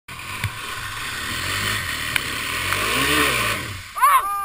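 ATV engine running and revving as the quad drives through mud, swelling up and back down in pitch about three seconds in, with a hiss over it and a couple of sharp knocks.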